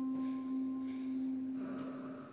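A single bell-like tone from the live score, like a singing bowl or tuning fork, holding one steady low pitch with a few fainter higher overtones and slowly fading away. A faint higher hum comes in near the end.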